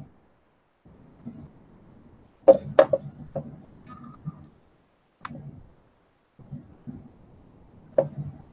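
Light knocks and clicks of hands and small tools on a work table: a quick cluster of several about two and a half seconds in and a single one a little past five seconds, over a faint low background hum.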